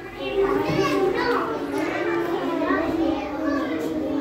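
Young children's voices talking and calling out over one another, with no single clear speaker.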